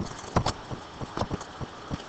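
A few faint, scattered clicks over a low, steady hiss.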